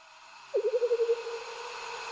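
A pan of fish simmering in coconut milk, a steady hiss of boiling that grows louder. About half a second in, a louder wavering mid-pitched tone cuts in, trembles briefly, then settles into a fainter steady tone.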